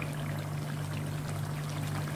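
Mutton karahi sizzling and bubbling in oil in a karahi pan on a gas burner, a steady frying noise during bhunai, the frying-down stage after the meat's water has cooked off. A steady low hum runs underneath.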